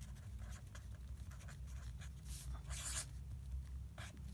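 Felt-tip marker writing on paper in a series of short scratchy strokes, the strongest a little past two seconds and again near three seconds in, over a steady low hum.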